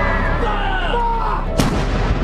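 A single shot from a field gun, about one and a half seconds in, over background music.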